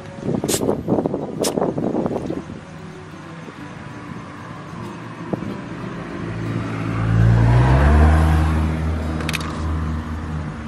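A short hiss of air and a couple of clicks as a digital tyre pressure gauge is pressed onto a tyre's valve stem, in the first two seconds. Later a passing vehicle's engine hum builds, loudest about eight seconds in.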